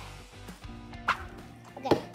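Background music with steady held tones, a short sharp sound about a second in, and a brief vocal sound near the end.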